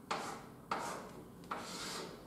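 Chalk drawing lines on a blackboard: three strokes, each starting sharply and fading away, spaced under a second apart.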